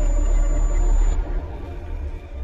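Electronic logo-intro music: a deep, steady bass rumble under held synth tones, dropping in level a little over a second in as the intro fades out.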